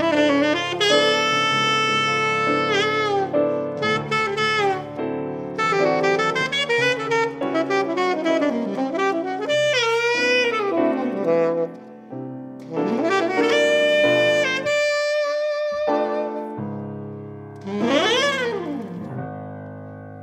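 Jazz saxophone playing a slow melody in long held notes, with several swooping slides up and down in pitch, over piano accompaniment. Around fifteen seconds in, the saxophone holds one note almost alone, and the music thins out near the end.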